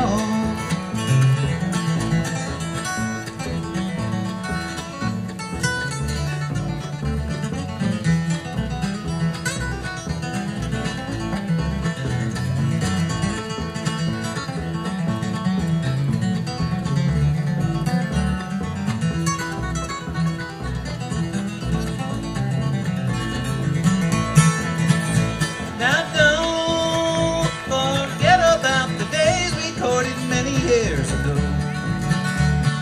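Live bluegrass instrumental break: a flatpicked steel-string acoustic guitar takes the lead over strummed rhythm guitar and plucked upright bass, in a steady beat.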